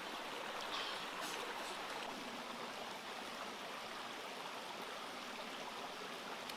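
A shallow rocky stream flowing, a steady rushing of water, with a short crackle about a second in.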